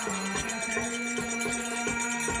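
Live traditional devotional music: a double-headed barrel drum struck in steady strokes, about three or four a second, over a steady held note, with jingling percussion.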